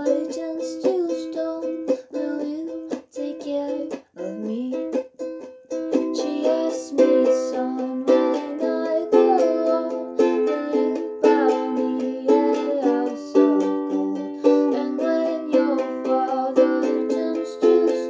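Ukulele strummed chord by chord in a small room, with a few short breaks in the first several seconds, then a fuller, steady strumming pattern from about six seconds in.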